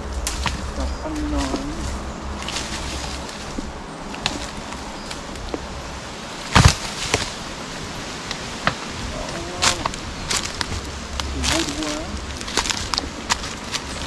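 Footsteps crunching and crackling through dry leaf litter and twigs, with one loud sharp crack about six and a half seconds in.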